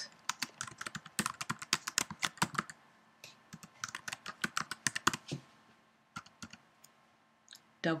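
Typing on a computer keyboard: a fast run of key clicks for about five seconds, then a few scattered keystrokes.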